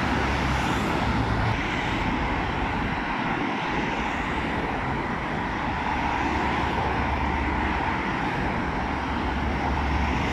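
Steady noise of heavy multi-lane highway traffic, with the tyres and engines of cars, vans and buses passing below. Every few seconds a single vehicle swells up out of the rumble and fades away again.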